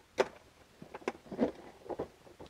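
Plastic clamp latches of a DeWalt ToughSystem 2.0 organizer snapping open and its clear plastic lid being lifted. There is one sharp click just after the start, then a few softer clicks and knocks.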